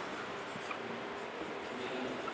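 Marker pen writing letters on a whiteboard: faint rubbing strokes over a steady low room hum.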